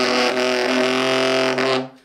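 Tenor saxophone holding a low note with a rough, dirty growl, the tongue rolled against the reed for a fluttering rasp; the note stops near the end.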